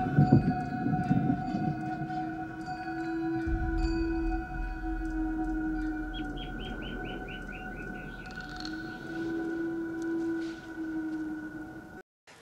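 Broadcast TV soundtrack of a night scene: sustained, droning music tones held throughout, with a quick run of about eight short chirps about six seconds in.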